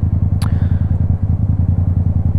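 Yamaha motorcycle's 689 cc parallel-twin engine running at low, steady revs with an even, rapid low pulse. A single brief click about half a second in.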